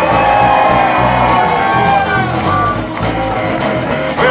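Live rock band playing electric guitars over bass and drums, with a held high note over roughly the first two seconds.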